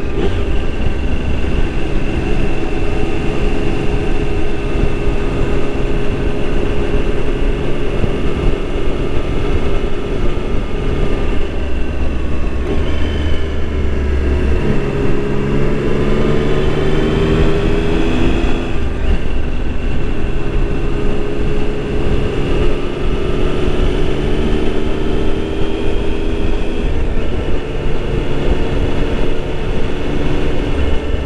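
Motorcycle engine running at road speed under a dense low rumble of wind and road noise. Around the middle the engine note drops, then climbs steadily for a few seconds as the bike accelerates, falls again and settles into a gentle rise.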